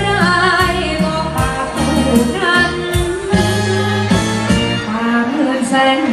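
A singer singing a Thai song live into a microphone over backing music with a bass line and a steady drum beat; the voice holds notes with a wavering vibrato.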